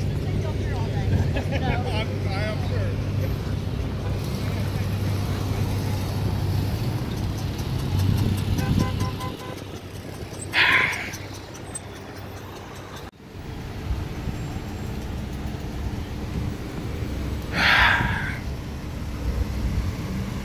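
Cars driving slowly past with a steady low engine hum, and two brief loud shouts, one about halfway through and one near the end.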